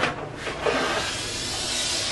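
One long breath drawn in through the neck of a rubber balloon filled with sulfur hexafluoride, heard as a steady hiss of gas that grows a little stronger toward the end.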